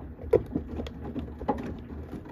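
Samsung front-loading washing machine's drum turning a wet load during a Baby Care 40° wash, with water and clothes sloshing and splashing unevenly over a steady low motor hum. The biggest splash comes about a third of a second in.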